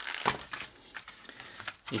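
Clear plastic blister packaging being pulled open and handled, crinkling and crackling, loudest in the first half second and fainter after.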